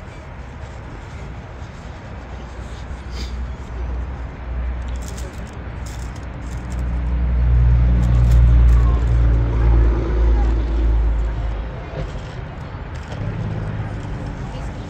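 A motor engine passing by: a low rumble that builds over several seconds, is loudest around the middle, then fades away.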